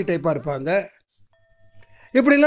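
A voice speaking that stops about a second in. A short quiet gap follows, holding only a few faint steady tones.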